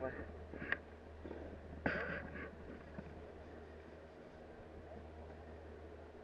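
Quiet chairlift ride: a steady low hum with faint distant voices, and a brief call about two seconds in.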